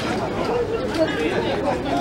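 Chatter of several people talking at once, voices overlapping with none standing out as one clear line of speech.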